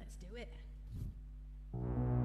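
A steady low electrical hum, then about two seconds in a synthesizer keyboard starts a sustained chord that rings on as a soft pad-like tone.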